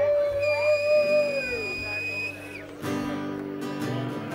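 A long drawn-out whoop and a high held whistle from the audience. About three seconds in, the band starts a song with strummed acoustic guitar and bass.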